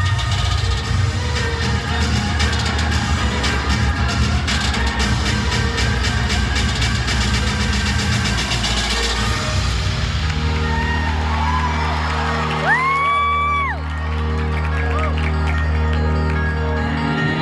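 Loud arena PA music for the pre-game introductions, with the crowd cheering underneath. About ten seconds in, the music changes to a sustained deep bass drone, and a single high tone slides up, holds for about a second and slides back down.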